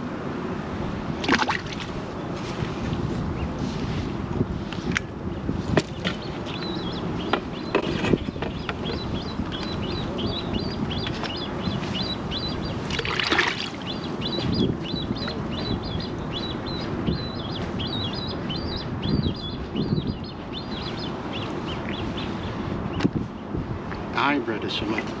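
Wind and water lapping at the waterside, with knocks and clicks of fishing tackle being handled. Through the middle stretch, small birds chirp in quick, high runs.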